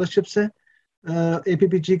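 Speech only: a man talking over a video call, his voice cut by a brief silent gap about half a second in before it resumes.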